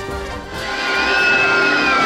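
Several riders screaming together as a log-flume boat plunges down the drop, the long screams starting about half a second in and swelling over a rising rush of noise. Background music plays underneath.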